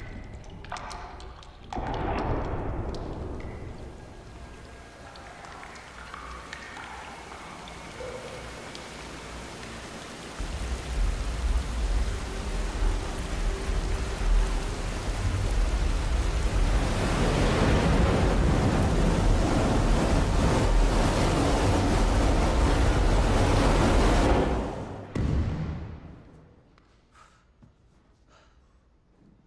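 Water falling in a steady spray like a shower, swelling louder with a deep rumble underneath from about ten seconds in, then dying away a few seconds before the end.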